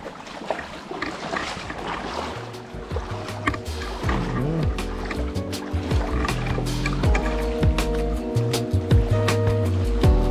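Background music building up: sustained tones rise in over a faint wash of water and outdoor noise, and a heavy bass and beat come in about four seconds in.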